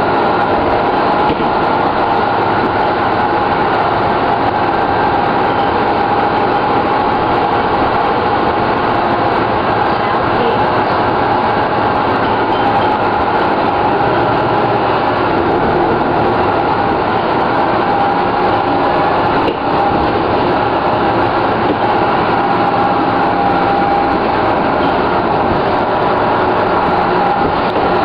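A 1997 Orion V transit bus's turbocharged Detroit Diesel Series 50 inline-four diesel and Allison B400R automatic transmission running steadily under way, with a steady whine in the sound. The uploader says the turbocharger is slightly overblown.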